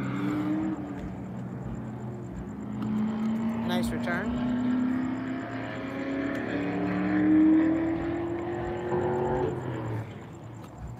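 A motor vehicle engine, heard at some distance, running with a pitch that climbs slowly for several seconds as it accelerates and then cuts off just before the end, over a steady low hum. A single sharp knock comes about four seconds in.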